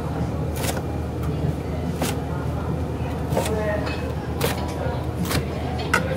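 A chef's knife cutting through the crisp crust of a breaded pork cutlet on a cutting board: about six sharp crunching cuts, roughly one a second, over a steady low kitchen hum.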